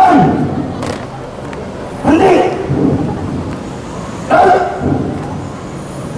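Loud shouting in a marching drill: three harsh shouted calls about two seconds apart.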